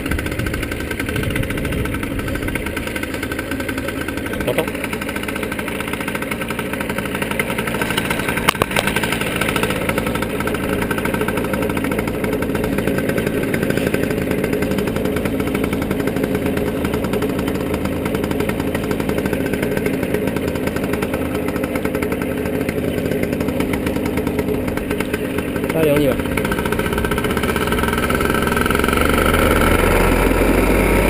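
Paramotor engine idling steadily on the pilot's back, heard close up. Late on a short falling tone passes, and the engine runs a little louder near the end.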